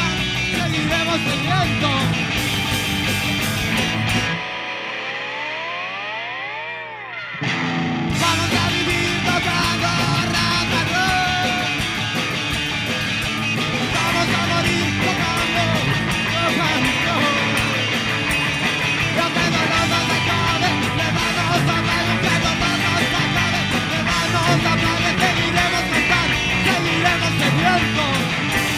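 Amateur rock band playing live: electric guitars, bass guitar, drum kit and a singer. About four seconds in the band drops out, leaving one held note that slides up and back down. The full band comes back in about eight seconds in.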